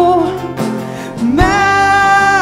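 Live worship song: a woman singing in Latvian over a strummed acoustic guitar, with drums behind. A held sung note ends just after the start, and after a short dip a new long note begins about one and a half seconds in, with a drum hit.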